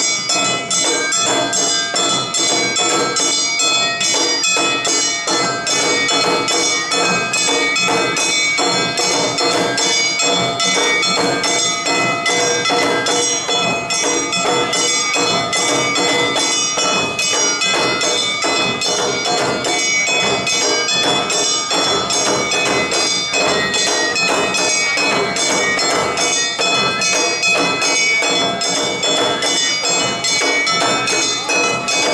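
Awa Odori festival band playing: a kane hand gong struck in quick, ringing strokes, shime-daiko drums beaten with sticks, and a shinobue bamboo flute, together in a fast, steady beat.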